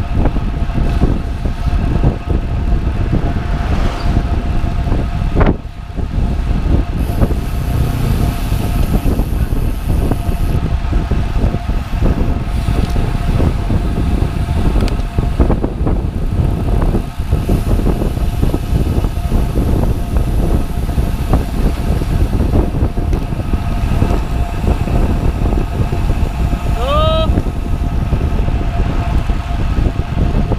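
Wind rushing over an action camera's microphone on a road bike moving at about 35–40 km/h, mixed with tyre and road noise. A faint steady whine runs under it, and a brief pitched chirp sounds near the end.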